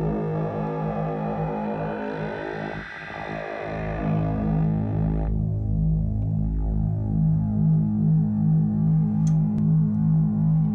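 Buchla-format synthesizer voice from the Keen Association 268e Graphic Waveform Generator: a drone with notes pulsing in a repeating pattern, its timbre shifting as the wave shape changes. Bright upper overtones fall away about five seconds in, leaving a darker tone.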